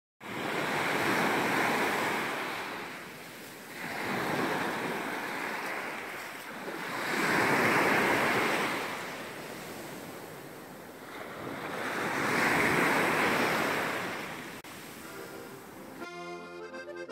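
Small sea waves breaking at the water's edge and washing back, in four surges a few seconds apart.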